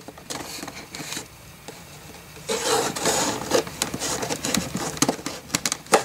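A blade cutting and scraping through the tape seal of a cardboard box, with scattered clicks and taps first and then a rough scraping stretch from about two and a half seconds in until near the end. The blade is struggling to cut through at the box's corner.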